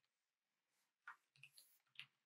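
Faint keystrokes on a computer keyboard: three or four soft clicks in the second half, otherwise near silence.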